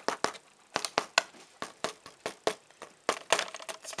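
Dried, salt-crusted vegetable bouillon paste on parchment paper crackling and crunching under pressing fingers, in irregular crisp clicks with a denser bunch near the end. The crisp break is the sign that the layer has dried out.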